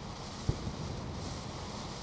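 Wind rumbling on the microphone over a steady hiss, with one low bump about half a second in.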